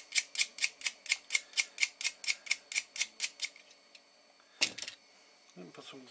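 Rapid, even mechanical clicking, about four or five clicks a second, fading away about three and a half seconds in, followed by a single louder click near the end.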